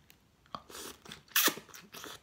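Mouth slurping pho rice noodles off chopsticks in short pulls, a hissy one followed by a louder, sharper one about a second and a half in.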